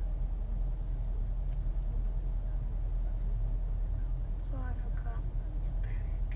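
Steady low rumble of a car idling, heard from inside its cabin, with a brief sung or spoken voice sound about four and a half seconds in.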